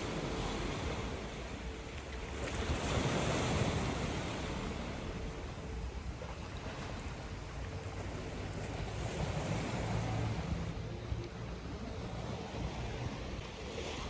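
Sea waves washing in, with wind on the microphone. The wash swells about three seconds in and again around ten seconds.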